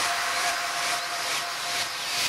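Breakdown in an electronic trance track: the kick and bass are gone, leaving a hissing white-noise sweep over a faint held synth note that fades in the first second.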